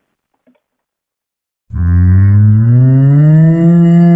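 A cow mooing as a sound effect: after near silence, one long, loud, low moo starts abruptly a little before halfway through and rises slightly in pitch as it goes on.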